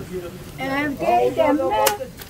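A person's voice talking, not made out as words, with one sharp click near the end.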